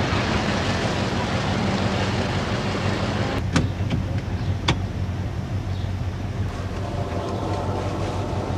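A van driving: steady engine and road noise with a low hum. Two sharp clicks come about three and a half and four and a half seconds in.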